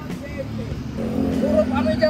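Roadside traffic: a steady low rumble of passing motorcycles and cars that grows louder from about a second in, with indistinct voices over it.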